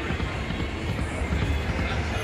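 Dancing Drums Explosion slot machine playing its free-spins bonus music while the reels spin, at a steady level.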